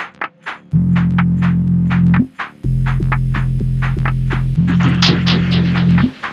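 Tech house music: long held deep synth bass notes under quick, crisp hi-hat ticks, the bass entering under a second in and breaking off briefly a little after two seconds.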